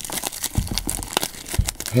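Clear plastic shrink wrap being peeled off a cardboard box, crinkling and tearing in an irregular run of sharp crackles.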